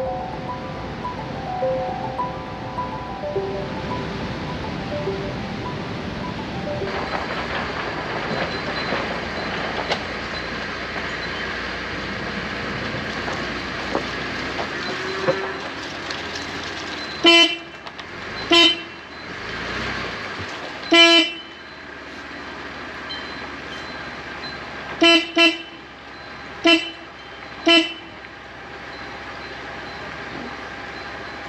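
Background music, then a car horn sounding in seven short toots over about ten seconds, two of them in quick succession, honked at pigs lying in the road ahead.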